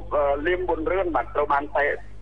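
Speech only: a voice talking without a break, over a steady low hum.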